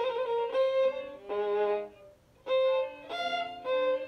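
A violin playing a trill slowly, starting on the upper note, C. The bowed notes change pitch about every half second, with a brief break about two seconds in before the notes resume.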